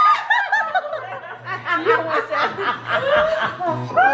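Women laughing: a quick run of high-pitched chuckles lasting about three and a half seconds.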